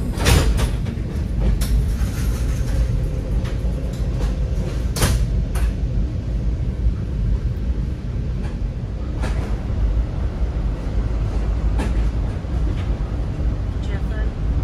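Steady low rumble of a Metra commuter train in motion, heard from inside the passenger car, with a few sharp clicks scattered through it.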